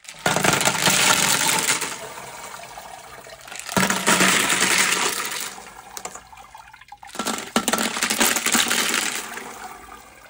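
Rocks and grit slurry emptied from a rock-tumbler barrel into a steel colander over a bucket, three times over. Each pour is a loud clatter of stones on the metal with splashing slurry, tailing off; the second starts about four seconds in and the third about seven.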